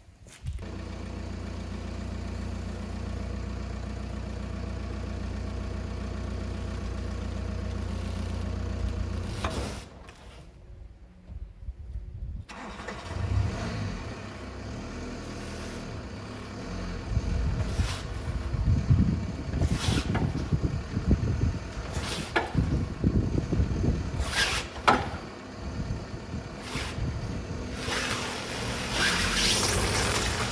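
A van's engine running steadily, then pulling under load as it tows a 1966 Hillman Imp in gear to try to free its seized engine. Repeated clunks and knocks come through in the second half. The Imp's engine is not turning but shifting on its unbolted mount.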